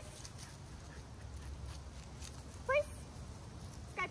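Husky–Samoyed mix dog whining: a short cry that glides in pitch a little past halfway through, and another at the very end.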